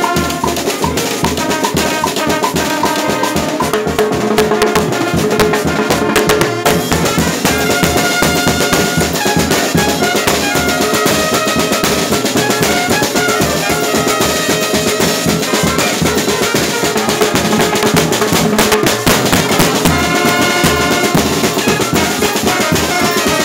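A brass band with drums playing lively, steady dance music, with brass melody lines over a regular bass-drum beat.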